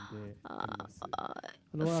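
A voice between words, making a low, drawn-out hesitation sound, with a short silence near the end before speech resumes.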